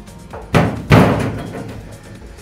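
Two sharp metallic knocks on a car's sheet-steel floor pan, a bit under half a second apart, each with a short ringing decay.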